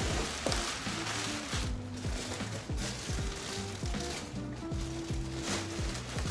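Plastic packaging bags crinkling and rustling in irregular bursts as clothing packages are lifted out of a cardboard shipping box, over quiet background music with a stepping bass line.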